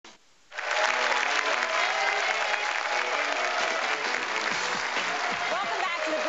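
Audience applauding, starting suddenly about half a second in, with voices mixed into the clapping.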